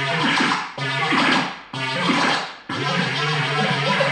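Handheld Korg touch-pad synthesizer played live: pitched electronic phrases that start sharply and fade, repeating about once a second. Near the end the sound runs on without a break.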